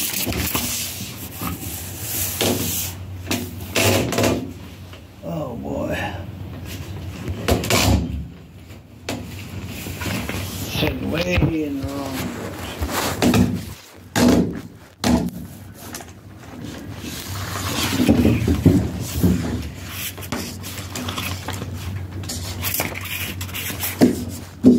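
Indistinct, muttered speech with scattered rustling and handling noise.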